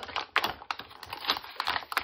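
Plastic blister packaging crackling and clicking as its cardboard backing is peeled off, a quick irregular run of sharp crackles.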